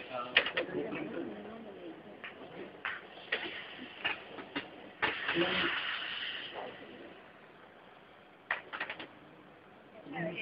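Pineapple rings cooking in a frying pan over a portable gas burner: light clicks of a utensil against the pan, and a louder burst of sizzling hiss about five seconds in that lasts a second and a half.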